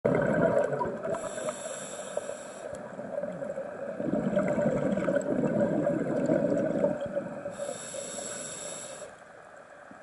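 Scuba diver's regulator breathing underwater: two hissing inhales through the demand valve, the first about a second in and the second near 7.5 s, each followed by a longer bubbling rumble of exhaled air.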